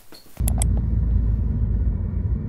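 Steady low rumble of a moving car heard from inside the cabin, starting suddenly about half a second in, with two short clicks just after it begins.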